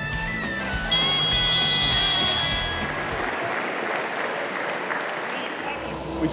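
Scoreboard end-of-game buzzer sounding as the clock runs out: one steady high tone starting about a second in and lasting about two seconds. Crowd applause follows in the second half, over background guitar music.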